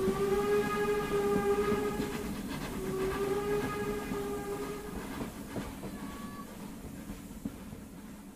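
Train whistle blowing two long blasts, then a short faint third, over the rumble and clatter of a moving train, the whole fading out.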